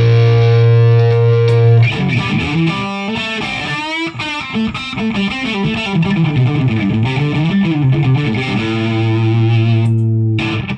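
Electric guitar, a Music Man Valentine, played through a T-Rex Karma boost pedal into a Friedman Dirty Shirley amp on one of its cleaner, lightly driven settings. A held chord gives way to a fast run of single notes up and down the neck, then a second held chord rings out and stops sharply near the end.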